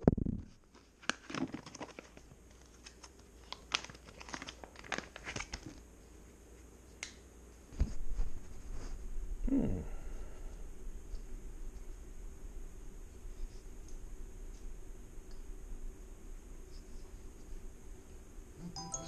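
Crinkling and crackling handling noise, like plastic wrapping being moved about, as a string of sharp clicks over the first five seconds or so. A single thump follows about eight seconds in, then a brief low hum-like voice sound, then a steady low room hum.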